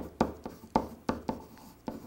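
Marker pen writing on a whiteboard: a run of short, separate strokes, about four a second, as letters are drawn.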